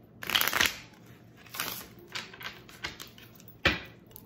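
A deck of oracle cards being shuffled and handled by hand: a series of short rustling bursts, the loudest about half a second in, with a sharp snap near the end.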